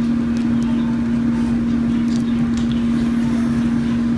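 A steady machine hum holding one constant low pitch, with a hiss behind it.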